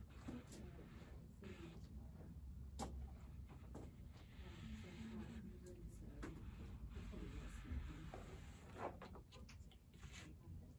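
Quiet room with faint, indistinct voices murmuring, and a few light clicks and rustles from handling fabric pieces and a small iron on a pressing mat.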